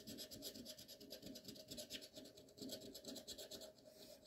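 Faint scraping of a coin's edge rubbing the silver coating off a scratch-off lottery ticket, in quick, repeated short strokes.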